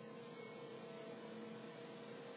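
Faint room tone: a steady low electrical hum under a light hiss.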